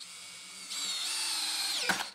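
Cordless drill driving a wood screw through a screw-depth-setter adapter. The motor whine starts about two-thirds of a second in, steps up in pitch, then winds down and stops near the end as the trigger is let go, with the adapter's head halting the screw at the set depth.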